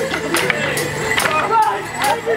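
Wooden Morris dance sticks clacking together in sharp strikes, about five in two seconds, over a folk dance tune played on a held-note instrument.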